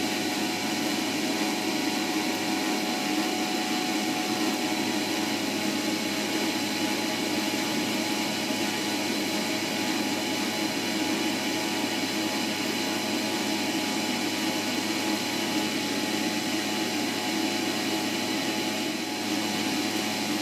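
Thermochef thermo-cooker's motor running steadily on speed one, turning the butterfly stirring bar through the rice, a steady hum with several held tones.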